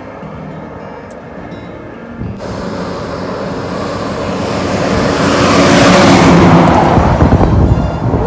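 A heavy army-style cargo truck approaching and passing close by. Its engine and tyre noise build to a peak about six seconds in and then fall away, with wind on the microphone.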